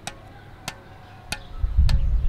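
A squash ball bouncing on the strings of a squash racket, four sharp taps about two-thirds of a second apart, each with a short ping from the strings, as the racket is twisted from one face to the other between bounces. A low rumble of wind on the microphone rises near the end and is louder than the taps.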